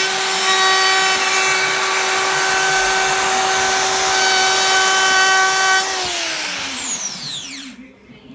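DeWalt plunge router with a round-over bit running at full speed, a steady high whine as it cuts along the edge of a wooden board. About six seconds in it is switched off, and the whine falls in pitch and fades as the motor spins down.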